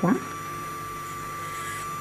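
Electric nail drill running steadily at about a third of its power, a constant high whine over a low hum, as its carbide cuticle bit works along the edge of the nail to lift the cuticle.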